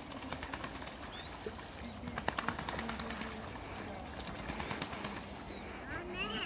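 Eastern spot-billed ducks splashing and dabbling in shallow stream water: a quick run of small splashy clicks, loudest around two to three seconds in.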